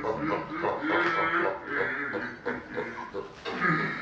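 A woman laughing hard in repeated short bursts.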